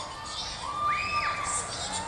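Children shouting and cheering, with a few long high-pitched shrieks overlapping through the middle.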